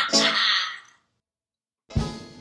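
A woman's breathy vocal sigh at the end of a sung phrase, fading out within about a second, followed by a stretch of complete silence. Jazz band music comes back in sharply just before the end.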